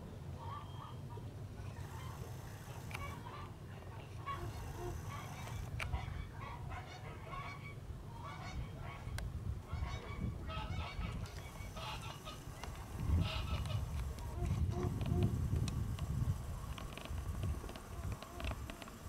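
A flock of hens clucking, with many short calls scattered throughout, over a low steady rumble that swells about two-thirds of the way through.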